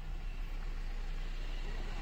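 Low, steady rumble of a car's engine and running gear heard from inside the cabin as the car creeps forward.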